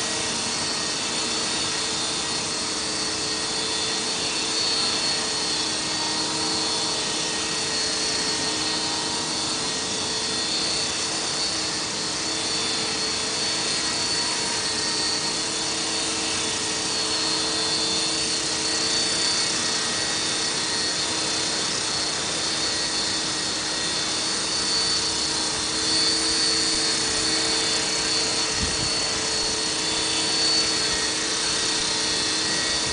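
E-sky Belt CP electric radio-controlled helicopter hovering: a steady whine of the electric motor and gears over the whoosh of the spinning rotor blades, holding an even pitch and level throughout.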